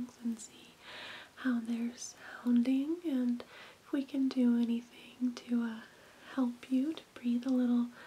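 Only speech: a woman talking softly and continuously.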